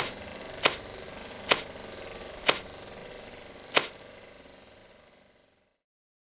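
Five sharp clicks at uneven spacing over a steady hiss, like the pops and surface noise of an old recording, fading out about five seconds in.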